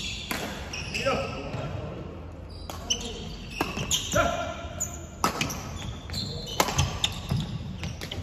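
Badminton rally in a sports hall: sharp racket-on-shuttlecock strikes come several times, about a second apart, between short squeaks of court shoes on the wooden floor.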